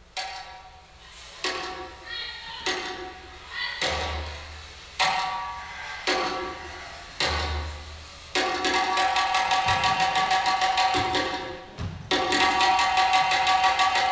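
Percussion music: separate ringing struck hits, spaced about a second apart and gradually building, then from about eight seconds a fast, continuous run of rapid strikes.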